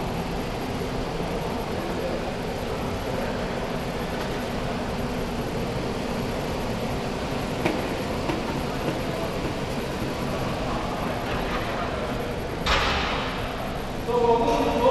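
Steady whirring rumble of several stationary exercise bikes being pedalled, with one sharp click a little past halfway and a short burst of hiss near the end.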